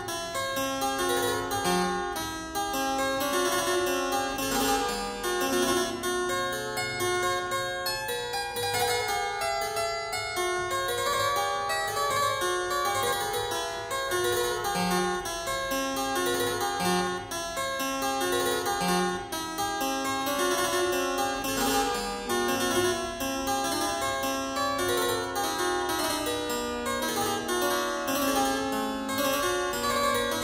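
Harpsichord music: a continuous stream of short plucked notes.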